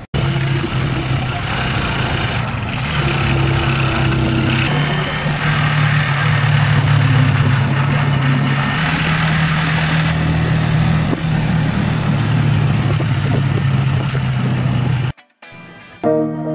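A motor vehicle's engine running steadily with road noise. It cuts off abruptly about a second before the end.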